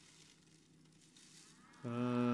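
Faint rustling hiss, then near the end a man's low voice begins a Buddhist chant on one steady held note.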